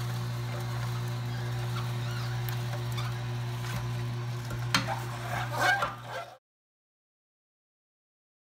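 Slow-turning masticating juicer's motor running with a low steady hum as it grinds wheatgrass, with a few clicks and crackles about five seconds in. The sound cuts off suddenly about six seconds in.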